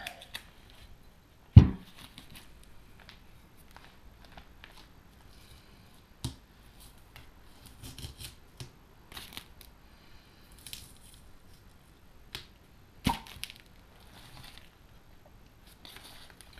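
Masking tape being peeled off a freshly painted motorcycle brake disc, with faint crackling and tearing as the tape comes away. A sharp knock about one and a half seconds in is the loudest sound, and another comes near the end.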